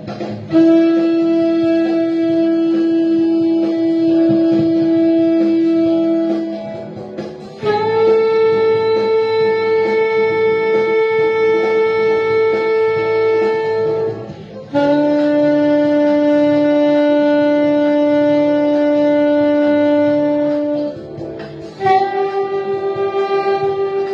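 Saxophone playing long tones: three steady held notes of about six seconds each, the middle one highest and the last one lowest, with short breaks for breath between them.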